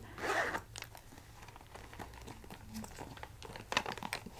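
A zipper on a small makeup pouch drawn once, briefly, at the start, followed by quiet handling with a few faint clicks.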